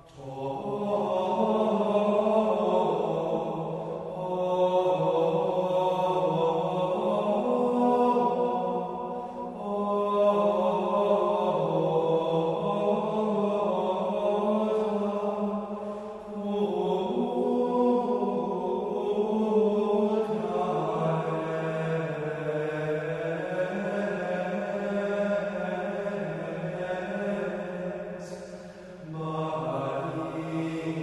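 Gregorian-style Marian chant sung in unison by men's voices, a single melodic line moving in small steps. It comes in long phrases with short breath pauses between them.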